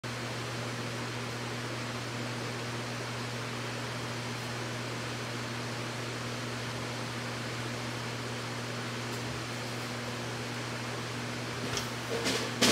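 Electric fan running steadily: an even hiss with a low hum underneath. A few faint knocks come near the end.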